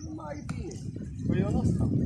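People talking, over a low rumble like wind buffeting the microphone, with a single sharp click about half a second in.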